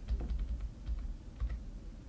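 Computer keyboard keys being pressed: a burst of quick taps, then a couple more about a second and a half in, as an object is nudged into place in the 3D modelling program.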